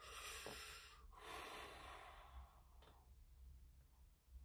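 A person's faint breath in and out: a short hissing intake, then a longer sigh lasting about two seconds.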